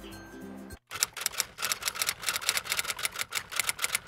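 Low background music with a bass line, cut off abruptly under a second in. Then a rapid run of sharp, typewriter-like clicks, several a second, for about three seconds.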